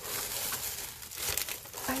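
Crinkly gift-box packaging, gold metallic shred filler and plastic-wrapped paper packs, rustling and crinkling steadily as hands dig through the box.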